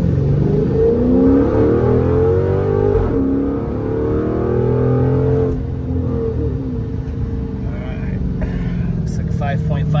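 2009 Dodge Charger SRT8's 6.1-litre Hemi V8 accelerating hard from a launch at about 1500 rpm, heard from inside the cabin. The engine pitch climbs, drops back about three seconds in as the automatic upshifts, and climbs again. Around five and a half seconds it drops once more and settles as the run ends.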